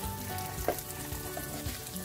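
Oil sizzling steadily as boiled potato slices and lentils fry in a pan, with a short knock of the slotted spatula against the pan about a third of the way in as the slices are turned.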